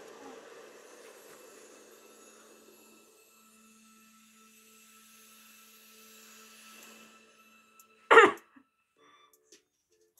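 Faint steady tones fade to near quiet, then a single loud, short cough about eight seconds in.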